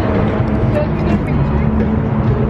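Busy street noise: steady traffic rumble with voices mixed in.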